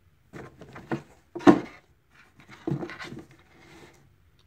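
Sneakers being handled and shifted on a cardboard shoebox: a few short knocks and scuffs, the loudest about a second and a half in, with soft rubbing and scuffing near the end.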